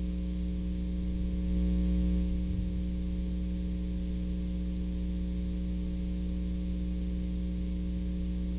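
Steady electrical mains hum with a layer of hiss. No other sound stands out above it.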